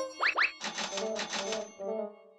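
Cartoon sound effects: two quick rising whistle glides, then about a second of fast rattling that fades out near the end.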